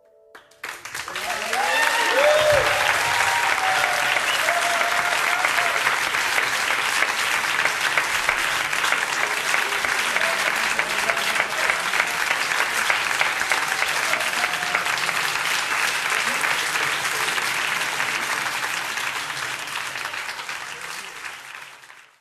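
Audience applauding at the end of a live jazz performance. The applause starts suddenly, a few shouts rise from the crowd about two seconds in, and it fades out near the end.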